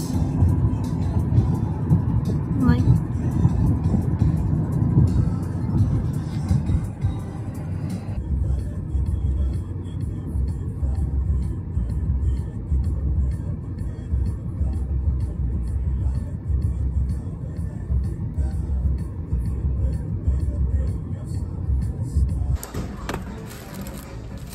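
Steady low road and engine rumble inside a moving car's cabin, with music over it. The rumble changes about a third of the way in, and it stops abruptly near the end.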